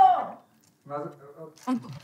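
Voices only: a loud exclamation trails off in the first half-second, then short, low murmured utterances follow.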